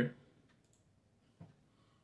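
Near silence with a couple of faint clicks, one soft just past half a second in and a sharper, short one about a second and a half in, after the last syllable of a man's voice at the start.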